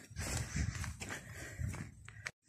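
Footsteps on a paving-stone path: a few dull, soft steps with low rumble between them.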